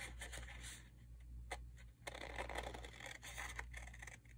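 Scissors cutting through decorative paper, faint snipping and paper rustling with a few small clicks of the blades.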